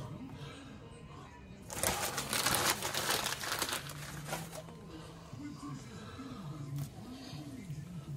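Newspaper crinkling and rustling as it is handled, loudest for about a second and a half a couple of seconds in, then quieter faint rustles.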